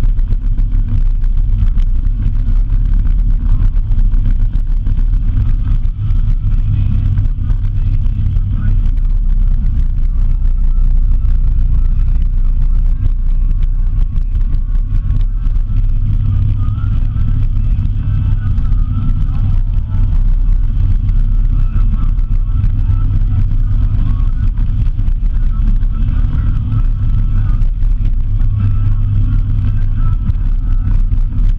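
A vehicle driving steadily along a dirt road: a continuous low rumble of engine, tyres on the packed dirt surface and wind on a vehicle-mounted camera.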